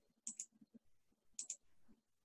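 Two faint, sharp double clicks about a second apart, from a pointing device picking the Magic Eraser tool and clicking it onto the image.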